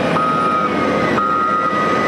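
Caterpillar motor grader backing up, its reversing alarm sounding two half-second beeps about a second apart over the steady noise of the machine's diesel engine.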